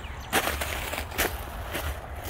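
Footsteps crunching on crushed gravel: a few separate steps.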